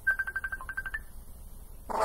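A phone giving a quick run of short, high electronic beeps, about ten in the first second, then stopping.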